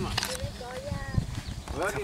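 Voices talking quietly: mostly speech, with faint background chatter and a few light knocks.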